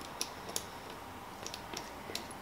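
A few faint, sparse clicks from the threaded metal cap of a polymer-clay extruder gun being screwed on by hand.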